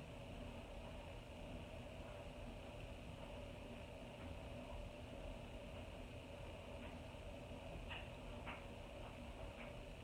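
Quiet room tone: a faint steady hiss and low hum, with a couple of faint soft clicks near the end.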